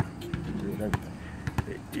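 A basketball bouncing on an outdoor hard court: several short, sharp bounces at uneven intervals.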